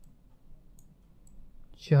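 A few faint computer mouse clicks, two close together about three-quarters of a second in, over quiet room tone; a man starts speaking right at the end.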